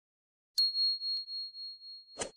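Notification-bell sound effect: one high, clear ding about half a second in that rings on and fades slowly, its loudness pulsing gently as it dies away.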